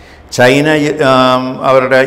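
A man's voice speaking Malayalam in a slow reading cadence, starting about a third of a second in, with some long drawn-out vowels.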